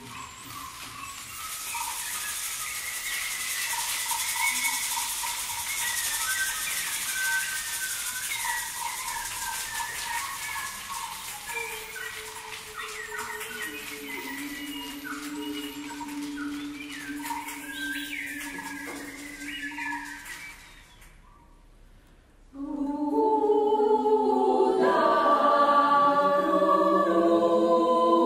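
Choir making nature sounds with voices: a steady hiss with whistled, bird-like chirps gliding over it, joined by low held notes partway through. After a short silence near the end, the choir begins singing in harmony.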